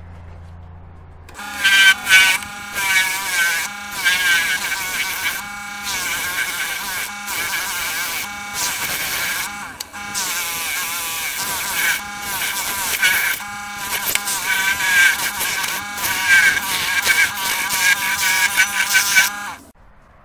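Parting tool cutting a groove into a spinning green sycamore blank on a wood lathe to part off the lid section: a loud scraping cut with a wavering, ringing squeal, starting about a second in and broken by brief pauses every second or two. The lathe motor hums before the cut, and the cutting stops just before the end.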